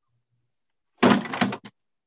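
A door closing about a second in: a short noisy thud followed by a small click.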